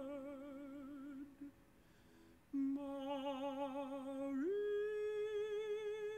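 Male tenor voice singing with vibrato. One held note ends just over a second in and is followed by a brief pause. The voice comes back on a lower note, slides up, and settles into a long sustained high final note.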